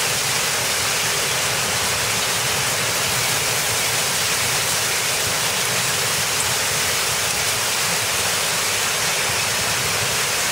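Heavy rain and hail driven by a strong south wind, a steady dense hiss.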